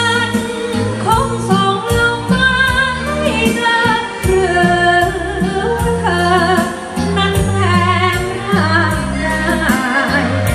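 A singer's voice sung live into a handheld microphone over backing music with a steady bass beat, the melody bending and holding notes.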